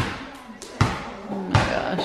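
A basketball bouncing on a hardwood floor: a few separate hollow bounces, the loudest right at the start.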